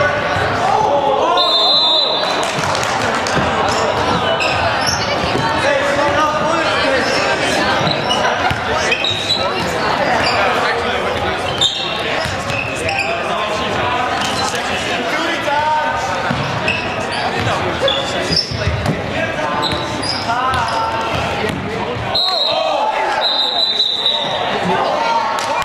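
Players calling and shouting to each other across an echoing gymnasium during a handball game, with a ball bouncing and thudding on the hardwood floor and short high sneaker squeaks.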